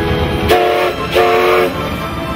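Steam whistle of the CK124 steam locomotive blowing two short blasts, each a chord of several tones with a rush of steam hiss.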